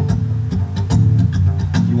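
Small acoustic band playing: acoustic guitar chords strummed in a steady rhythm over sustained double-bass notes.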